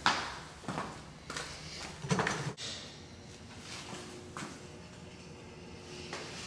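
A stiff, hard-to-work closet door being handled. A sharp knock comes first, then several lighter knocks, and a scraping rattle about two seconds in.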